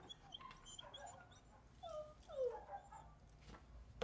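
Dogs whimpering and whining faintly in a series of short, falling whines, the loudest about two and a half seconds in.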